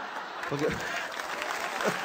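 Live audience applauding steadily in response to a comedian's punchline.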